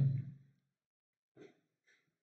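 A man's voice trailing off at the end of a phrase into a breathy sigh, then silence broken by two faint short sounds about a second and a half in.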